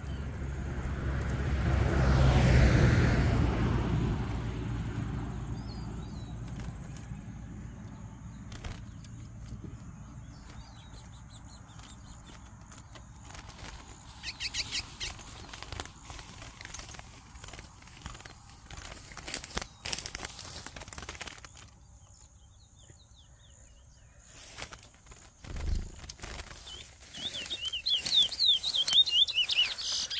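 A young male curió (chestnut-bellied seed finch), whose song is finished, gives a few short chirps midway. Near the end it sings a run of quick descending notes. A loud rushing noise swells and dies away over the first few seconds.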